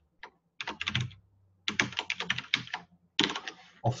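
Typing on a computer keyboard: quick runs of keystrokes in about four bursts, with short pauses between them. A faint steady low hum lies underneath.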